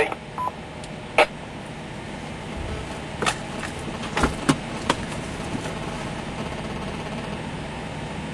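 A ham-radio transmission ends and a short beep sounds about half a second in. Then the vehicle cab holds a steady background hum, broken by five or six sharp clicks between about one and five seconds.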